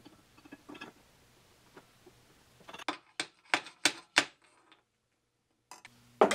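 Light clicks and metal clinks from parts and hand tools being handled at a metal lathe, as a pulley is fitted onto its arbor. A few faint taps are followed about halfway through by a quick run of about six sharper clicks.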